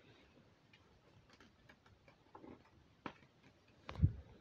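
Near silence broken by a few faint clicks, a sharper click about three seconds in and a louder knock at the very end: handling noise from a phone camera being moved.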